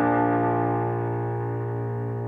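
A piano chord from the song's instrumental outro, struck just before and ringing on as it slowly fades.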